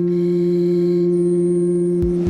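A steady electronic drone from the film's soundtrack: a low hum with a second tone above it, joined by a faint high whine about a second in.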